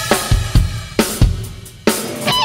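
A rock drum kit playing a short break on its own in a live band, with the other instruments dropped out. It plays a handful of kick and snare hits, with cymbal crashes about a second in and near the end.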